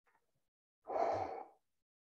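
A man's short audible sigh, one breath out lasting about half a second about a second in, as he releases a held deep backbend stretch.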